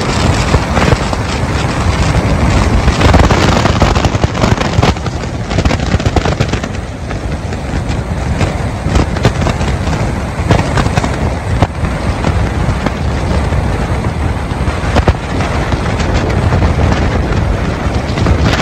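Wind buffeting the microphone: a loud, continuous rumble with dense crackling.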